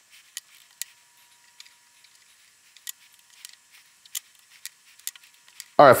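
Faint, scattered small clicks and taps, roughly one a second, from hands handling a riflescope while fitting a throw lever onto its magnification ring. A man's voice starts right at the end.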